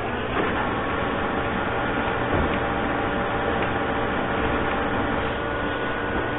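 Steady mechanical hum over a hiss, with several steady tones that hold unchanged throughout.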